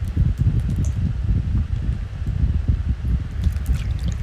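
Low, unsteady rumbling background noise with no pitched sound in it, continuing under the pause in the talk.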